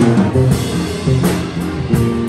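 Live big band playing: saxophones, trombones and trumpet over drums, with cymbal strikes keeping a steady beat.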